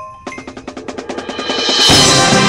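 Marching band percussion playing a rapid, even run of strokes that grows steadily louder, building into a loud full-ensemble hit with a crash near the end.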